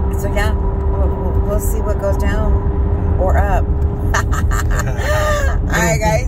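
Steady low rumble of a car driving, heard inside the cabin, with a constant drone under it. A voice comes and goes over it in short sweeping rises and falls of pitch, not in clear words.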